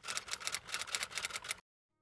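Typing sound effect: a quick, even run of typewriter-like key clicks, about nine a second, that cuts off suddenly about a second and a half in.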